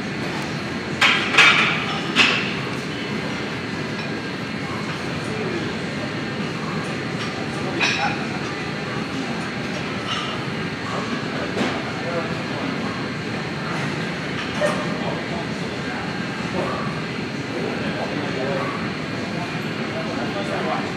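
Busy gym ambience: a steady din of background voices and machinery, broken by sharp metallic clanks of weights and gym equipment, a cluster of three about a second in and single ones scattered later.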